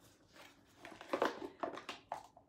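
Small cardboard candle box being opened by hand, the packaging crinkling and rustling. The handling is loudest a little past a second in, with a few short sharp rustles near the end.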